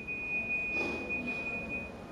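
A steady high-pitched pure tone, held unchanged and stopping shortly before the end, over faint room noise.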